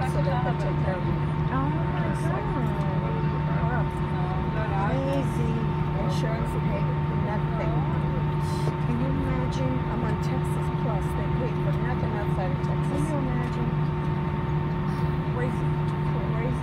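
Steady cabin drone of an Airbus A320 taxiing: a constant low hum with a couple of steady higher tones over a noise bed. Faint passenger chatter runs underneath.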